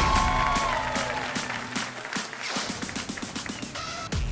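Short music sting for a segment title, opening on a held note, over studio audience applause, with a quick beat in the second half that cuts off at the end.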